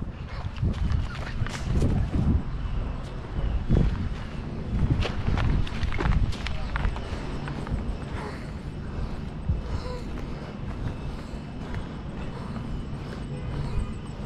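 Footsteps on dry grass and dirt mixed with knocks and rubbing from a hand-held camera, irregular and busiest in the first half, then quieter.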